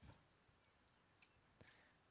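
Near silence: room tone with two faint computer mouse clicks a little past the middle.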